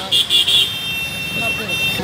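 High-pitched electronic beeping: three short beeps in the first half-second, then a slightly lower steady tone held to the end, over the low running of a motor vehicle.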